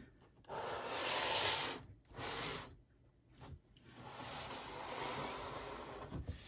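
A cardboard Hornby model-locomotive box being handled and turned round on a wooden desk: two short scraping rubs, then a longer, steadier rub of cardboard across the wood.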